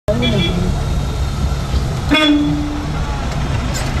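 A vehicle horn toots once about two seconds in, a single steady note just under a second long, over the low, steady running of a vehicle's engine heard from inside the cabin.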